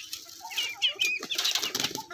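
Hens flapping their wings as they scramble for scattered grain, with short high clucking calls among the flapping.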